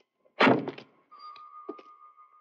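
A single loud, heavy thump about half a second in, dying away quickly. A steady high tone follows it and holds to the end.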